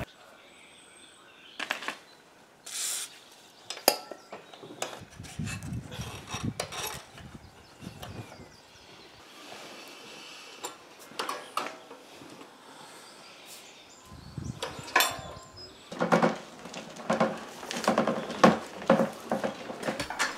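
Scattered metallic clicks and knocks from handling a homemade compressed-air engine's spool valve and cam-and-push-rod valve gear, coming more thickly near the end.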